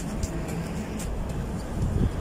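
Steady low outdoor rumble with a few faint ticks.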